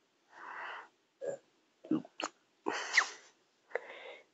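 Breathing and sniffing close to the microphone: a few short, breathy puffs, with brief mouth clicks between them.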